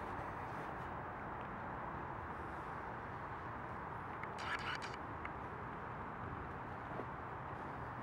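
Steady outdoor background hiss, with a short rustle, as of a step through fallen willow branches and leaves, about halfway through.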